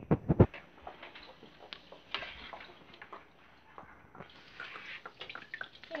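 Water splashing and dripping in a plastic bucket as a small aquarium net is dipped in to scoop out fish, with scattered small clicks and a busier stretch of splashing about four seconds in. A few sharp knocks open it, the loudest sounds here.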